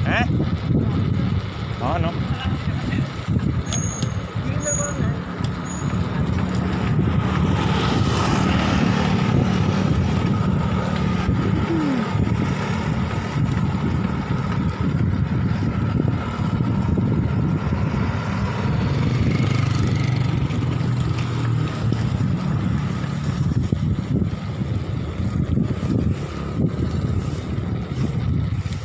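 Wind rumbling on the microphone of a camera carried on a moving bicycle, with road noise, steady throughout.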